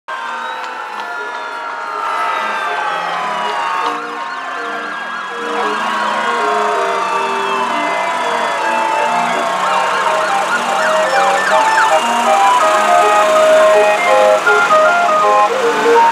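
Several fire-truck sirens wailing at once, their pitches rising and falling and overlapping, growing louder as the trucks come closer. A run of short stepped tones sounds underneath them.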